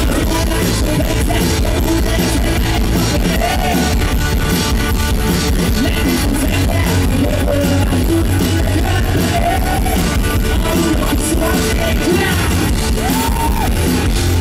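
Live rock band playing loudly through the stage PA: electric guitars, keyboard and drums, with a singer's voice over the band.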